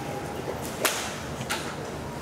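Two sharp cracks of golf clubs striking balls: a loud one a little under a second in and a fainter one about half a second later.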